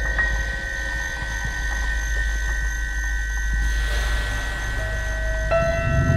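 Electronic music in a contemporary concert piece: a steady low rumble beneath several held high tones, with a hiss swelling and fading about four seconds in. Near the end, new lower held tones come in with a heavier rumble.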